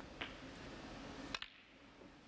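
Sharp clicks of snooker balls being struck: one click, another a fraction of a second later, then a close double click just over a second in.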